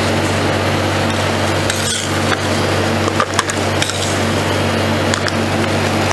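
Metal spatulas scraping and clicking on the stainless-steel cold plate of a rolled ice cream machine as frozen watermelon ice cream flakes are gathered and scooped up, over the steady low hum of the machine's refrigeration unit.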